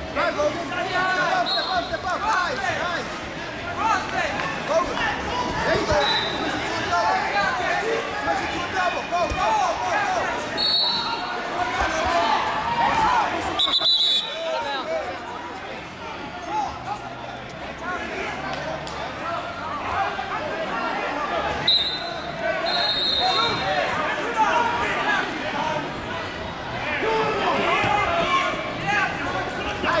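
Arena crowd noise: many spectators and coaches talking and shouting over one another in a large hall, with a few short high whistle blasts from referees scattered through.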